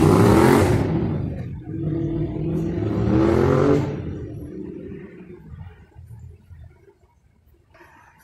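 Street traffic: two motor vehicles drive past close by, one right at the start and another about three seconds in, their engine pitch rising as they accelerate. The sound then fades away.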